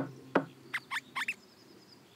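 Cartoon sound effects: two sharp ticks, then a quick run of four short, rising, high chirps about a second in.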